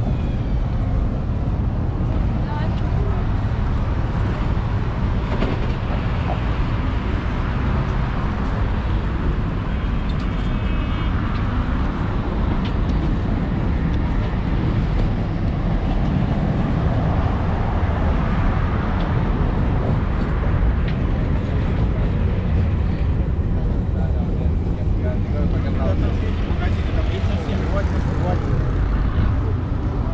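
Busy street ambience: a steady rumble of road traffic beside the walkway, with passers-by talking.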